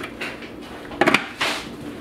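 Clear plastic lid of an electric rice cooker being handled over its bowl, with a couple of quick plastic knocks about a second in.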